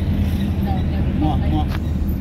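Motor vehicle engine running steadily, a loud, even low drone heard from inside the cab, with faint voices partway through.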